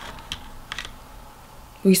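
A few soft, short clicks in a pause between read-aloud sentences, like keys or a device being handled. A woman's reading voice starts again just before the end.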